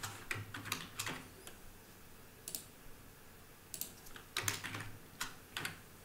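Keys clicking on a computer keyboard in two short bursts, one at the start and one about four seconds in, with a single click between, as text is copied and pasted in a code editor.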